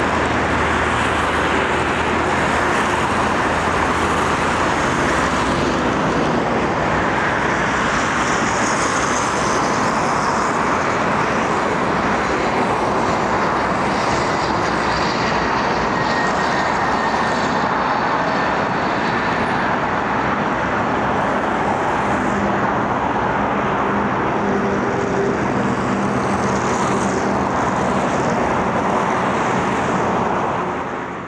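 Embraer Legacy 500 business jet's twin turbofan engines on landing approach, passing overhead: a steady jet engine noise with a faint high whine about halfway through.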